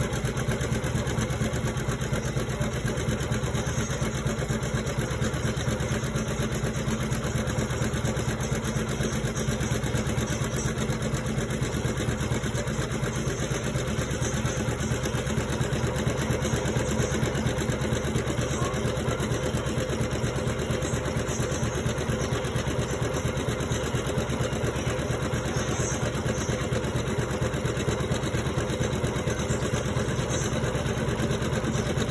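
Computerized embroidery machine stitching steadily, its needle running in a fast, even rhythm.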